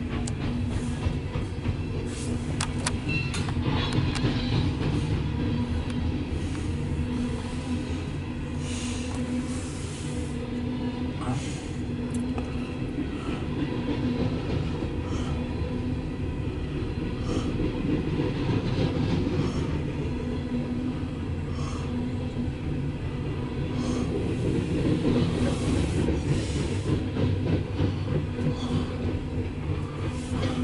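Freight cars of a loaded coal train rolling past, a steady heavy rumble of wheels on rail with a faint hum. A few sharp clicks come in the first few seconds, with scattered ones after.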